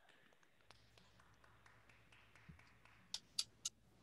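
Near silence: room tone with a faint low hum, and three short, faint clicks near the end.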